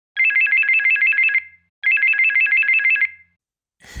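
A telephone ringing twice: an electronic ring that warbles rapidly between two high tones, each ring a little over a second long with a short pause between.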